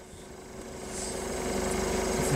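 A small engine running with a fast, even pulse, growing steadily louder as it comes closer.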